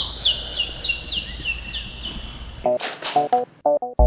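A quick run of high chirps, each falling in pitch, about three a second, stopping before two seconds in. Near the end, plucked guitar music starts with two sharp hits.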